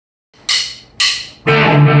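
Two sharp count-in strikes about half a second apart, then a rock band of electric guitar, bass guitar and drums comes in together about one and a half seconds in and plays on steadily.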